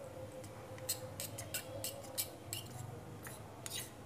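Metal spoon stirring custard powder into cold milk in a steel bowl, scraping and clicking against the bowl in short, irregular strokes, over a faint steady hum.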